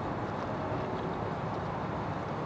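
Steady low outdoor rumble, an even background noise with no distinct events.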